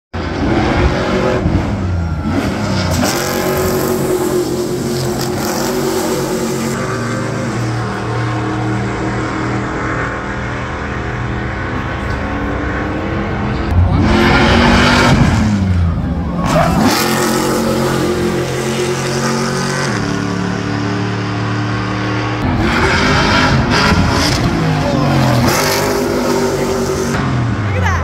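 Race trucks' V8 engines running around the circuit, rising and falling in pitch as they pass, with the loudest passes about 14 seconds in and again near the end.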